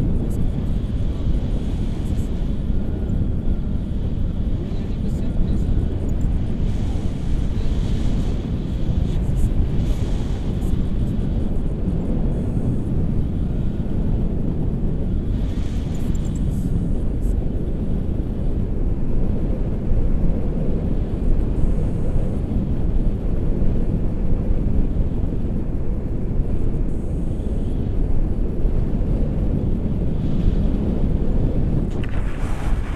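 Airflow buffeting the camera microphone in flight on a tandem paraglider: a steady low rushing noise throughout.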